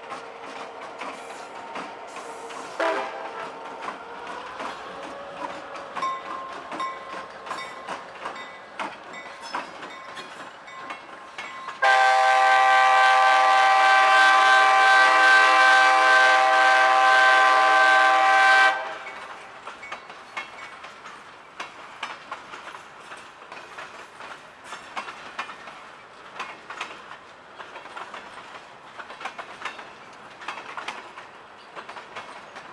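Freight cars rolling past on the rails, wheels clicking over rail joints. About twelve seconds in comes one long, loud multi-tone train horn blast of about seven seconds, which cuts off sharply.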